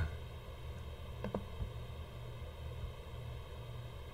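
Low steady room hum with a few faint computer clicks a little over a second in, made while searching for a page on the computer.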